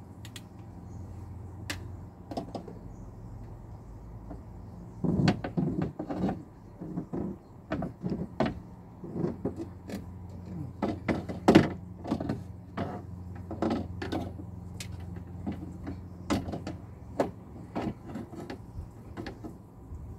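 Car window regulator and its cables knocking and clicking against the metal inner door panel as it is worked by hand into the door cavity. There are irregular knocks and rattles from about five seconds in, over a steady low hum.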